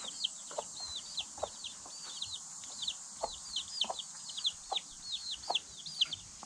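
Young chickens peeping steadily, several short high peeps a second, with a few lower clucks from the hens mixed in.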